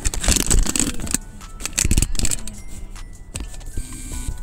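Handling noise: irregular rustling and scraping as a camera phone is picked up and moved, louder in the first second and again around two seconds in.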